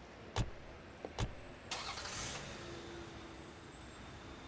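Two car doors shut, one after the other about a second apart, then a car engine starts and settles into a steady low idle.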